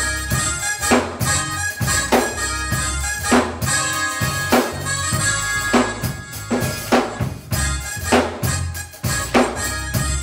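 Live church band music: a drum kit keeping a beat with bass guitar and a sustained keyboard or organ sound.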